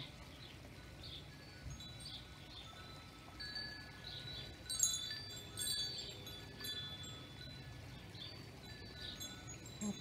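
Wind chimes ringing softly, several clear metallic tones struck together about halfway through and lingering, with a bird chirping now and then.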